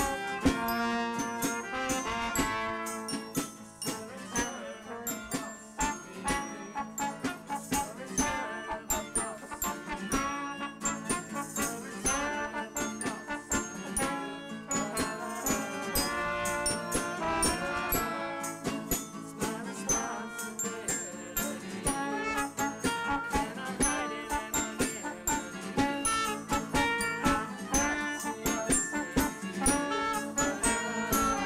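Live indie band playing a song, with pitched instruments over a steady run of percussive strikes.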